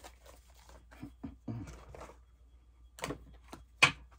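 Quiet handling of a deck of cards, with a few sharp clicks, the loudest just before the end, and some faint mumbled speech.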